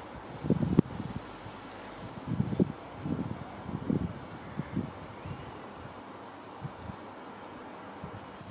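Hands pressing compost down around a small viola plant in a terracotta pot: a handful of soft, low thuds and rustles, mostly in the first five seconds, with wind on the microphone.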